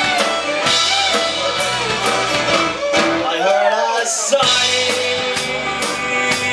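Live Celtic punk band playing an instrumental section: fiddle over strummed guitars and a driving drum beat. The bass and drums drop out briefly a little past halfway, then come back in.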